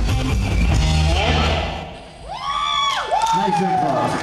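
Live rock band with electric guitar playing the last notes of a song, dying away about two seconds in, followed by two high, gliding whoops.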